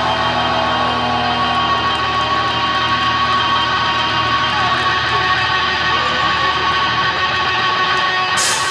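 Live metal band playing loud and continuous, with distorted electric guitars over bass and drums.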